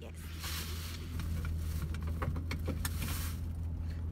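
Car engine idling, heard from inside the cabin as a steady low hum that grows louder about half a second in, with a few faint clicks.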